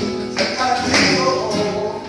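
Live flamenco: nylon-string guitar and a male singer, with palmas hand-clapping and the dancer's shoes striking the stage in sharp taps.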